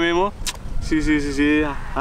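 People speaking Telugu in short phrases, with a steady low rumble underneath and a single sharp click about half a second in.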